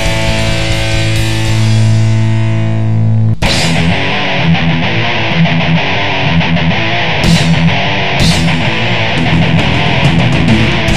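Crossover thrash band on a demo recording: a held, ringing distorted electric guitar chord, then about three and a half seconds in the full band cuts in abruptly with a fast riff, drums and cymbal crashes.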